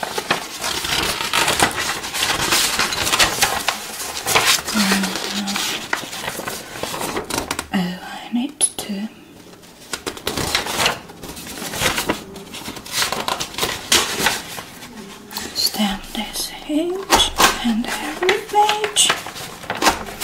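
Sheets of paper rustling and flipping as documents are leafed through and handled, with soft, indistinct murmuring now and then.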